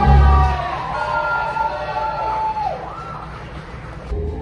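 Several wailing, siren-like voices sliding up and down in pitch, over music whose heavy bass stops about half a second in.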